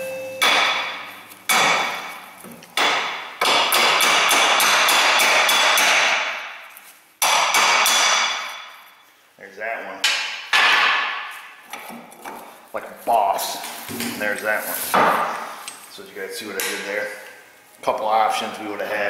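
Hammer blows on steel, each ringing briefly: a hammer driving a rust-seized U-joint bearing cup out of a driveshaft yoke by catching the cup's edge. A few single blows, then two fast runs of rapid strikes a few seconds in, then slower, spaced blows.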